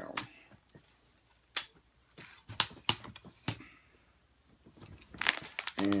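Sharp separate clicks and knocks from a telescoping tripod selfie-stick pole being collapsed by hand, a handful over about three seconds. Near the end, crinkling of a wrapper.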